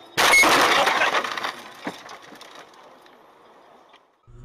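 A car rear-ending a pickup truck, heard from the dashcam inside the car: a sudden loud crash as the hood crumples, with about a second of crunching and breaking that then dies away. A single further knock follows a little later.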